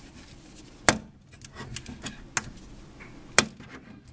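A few sharp clicks and taps, the loudest three spaced about a second apart, as a handheld remote held on a magnetic clip is handled and wiggled against a thin plastic sheet.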